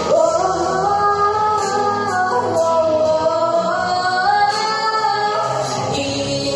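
A girl sings one long held note into a microphone, its pitch bending up and down, over a pop-style backing track.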